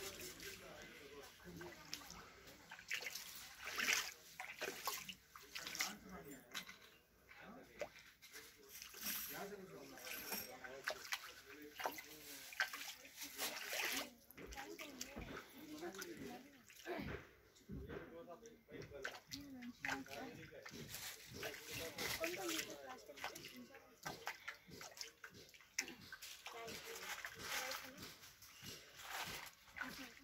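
Footsteps splashing and sloshing through shallow floodwater on a hard floor, with people talking faintly in the background.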